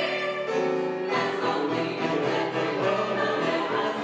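Live choral music: a female vocal ensemble singing with piano accompaniment.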